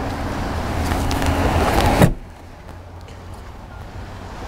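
Power liftgate of a Mercedes-Benz GLK 350 lowering on its motor. A steady rushing noise covers the first two seconds and cuts off suddenly, leaving a quieter background.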